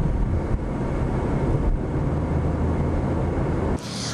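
Steady low rumble of a car driving in traffic, heard from inside the cabin; it cuts off abruptly near the end.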